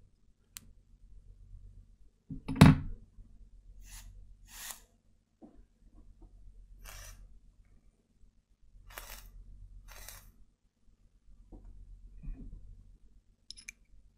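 Vaping on a rebuildable dripping atomizer: several short breathy hisses, some in pairs, as vapor is drawn and exhaled. A sharp knock about two and a half seconds in, and light handling clicks.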